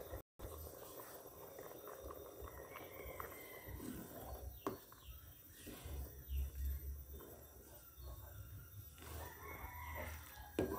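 A rooster crowing faintly in the background, twice: about three seconds in and again near the end. Low rumbling and a single light knock come from the pot of thick champorado being stirred.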